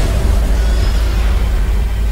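Loud, dense low rumble of movie-trailer action sound effects: armored trucks launched over a frozen lake as the ice erupts in an explosion.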